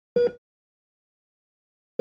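Heart monitor beeping: two short, identical pitched beeps, one just after the start and the next at the very end, a little under two seconds apart with silence between.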